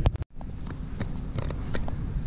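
A couple of clicks and a brief dropout as the recording cuts, then a steady low wind rumble on the microphone with faint scattered ticks.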